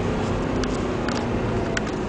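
Mercedes CLS 63 AMG's V8 engine and tyre and road noise heard from inside the cabin, a steady hum at an even pace with a few faint clicks.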